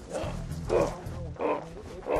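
Three short calls about half a second apart, over background music.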